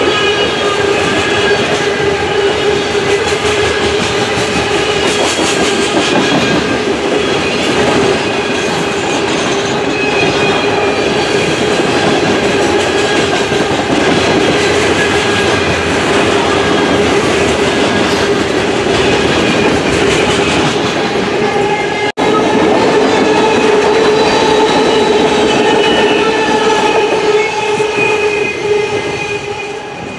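Freight train of covered hopper cars rolling past close by: a steady rumble and clatter of steel wheels on rail with a high ringing tone over it. About three-quarters of the way through it breaks off for a moment, then the rolling goes on and fades near the end.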